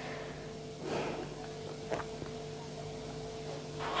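Quiet room with a steady low electrical-sounding hum; a faint breath is heard about a second in, and a small tick near two seconds.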